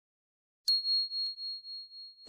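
A single high bell "ding" sound effect for a notification bell: it strikes sharply about two-thirds of a second in and rings on as one steady tone, fading with a slow waver.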